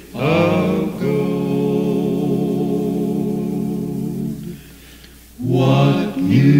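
A cappella gospel quartet singing in four-part harmony: a short phrase, then a long held chord that fades about four and a half seconds in, with the next phrase starting near the end.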